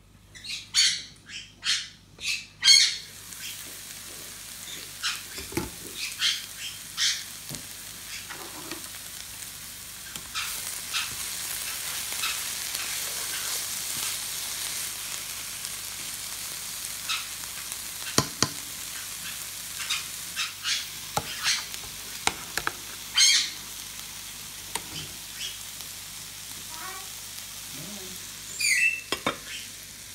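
Vegetables sizzling in a frying pan while a spatula stirs them, with sharp clicks and scrapes of the utensil against the pan. The clicks come thick in the first few seconds, and the sizzle swells in the middle.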